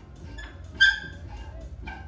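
A dog gives one short, high yip about a second in, with faint whimpers around it.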